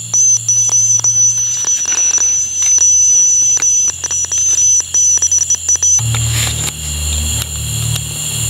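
A steady high-pitched tone with many faint clicks, cutting off about six seconds in as a low hum takes over.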